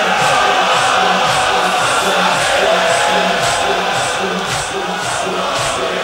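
A hall full of mourners beating their chests in unison (sineh-zani), about two strikes a second, while the crowd sings along with the noha.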